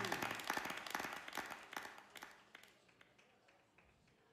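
Scattered applause from a small audience, faint and dying away over about two and a half seconds.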